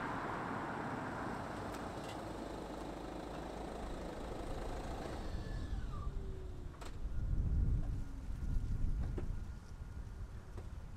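A Citroen Grand C4 Picasso with the 1.6 BlueHDi four-cylinder diesel approaching and slowing to a stop, its tyre and engine noise fading over the first half. A low rumble follows while it stands, with a click near the end as the driver's door opens.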